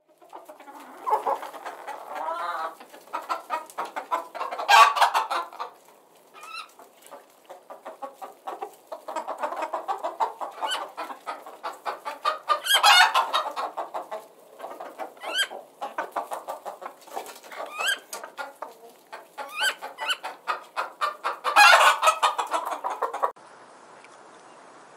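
Domestic chickens clucking in a continuous run of short calls, with louder calls about 5, 13 and 22 seconds in. The calls stop about a second before the end.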